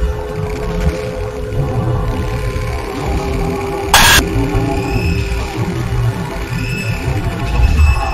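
Experimental noise music: a dense low rumble under a held mid tone, broken by a sudden short burst of loud noise about halfway through, followed by brief arching high tones.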